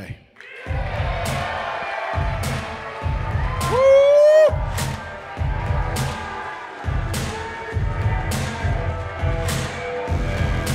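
Walk-on music with a heavy bass beat and regular sharp ticks plays over a crowd cheering. About four seconds in comes one loud vocal cry that rises in pitch and is held for about a second.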